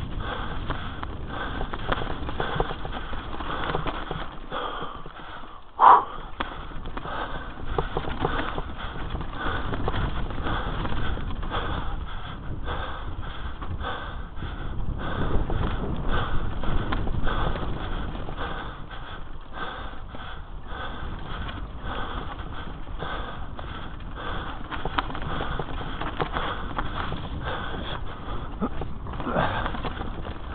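Mountain bike riding down dirt forest singletrack: tyres rumbling over the ground, with a constant rush of noise and a run of quick knocks and rattles from the bike bouncing over bumps. A short high-pitched squeal about six seconds in is the loudest sound.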